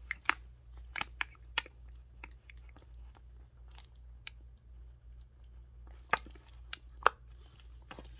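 Coach Pillow Tabby 26 leather handbag's snap closure being worked under the flap: a few sharp clicks in the first two seconds and a few more near the end, with faint rustling of leather between them.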